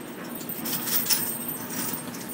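Dry hay rustling and crackling as cats scuffle and wrestle in it, a little louder about halfway through.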